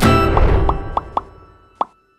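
Title-card jingle ending on a chord that dies away, with five short pops over it; the last pop, near the end, is the sharpest.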